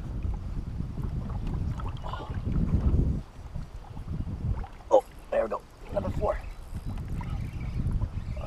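Wind buffeting a camera microphone on an open boat, a low rumble heaviest in the first three seconds. A few short, unclear vocal sounds come about five seconds in.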